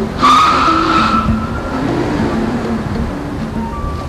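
A car's tyres squeal briefly, starting about a quarter second in and fading out over about a second, as the car brakes hard. Background music plays underneath.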